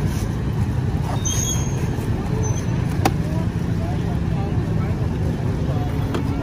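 Steady low rumble of street traffic, with a steady engine hum joining about one and a half seconds in and faint voices in the background. A single sharp click about three seconds in.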